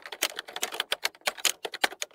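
Rapid, irregular clicking like keys being typed, roughly eight to ten sharp clicks a second with brief gaps: a clicking sound effect.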